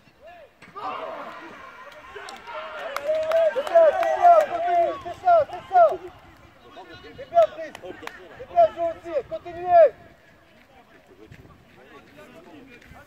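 Loud voices shouting on a football pitch: rapid short calls, one after another, in two runs, with a few sharp knocks among them.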